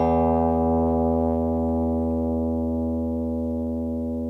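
A guitar's open low E string ringing and slowly fading. Its 82 Hz fundamental sounds together with a long row of overtones at whole multiples of it.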